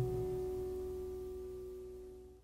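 Final sustained chord of jazz piano music ringing out and steadily fading away, with no new notes struck.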